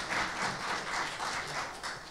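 Audience applauding a speaker, many hands clapping together; the applause fades out near the end.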